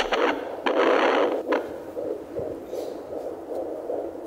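Handheld fetal Doppler (Sonoline B) picking up an unborn baby's heartbeat through its speaker: a fast, regular pulsing within a steady hiss. A louder burst of noise with a few clicks fills the first second and a half.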